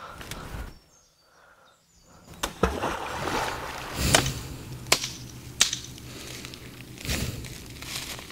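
Rock thrown into a creek, hitting the water with a splash about four seconds in, after a second or so of silence; several more sharp knocks and rustles follow.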